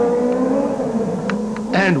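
Rally car engine held at high revs, a steady whining note that slowly falls in pitch and fades.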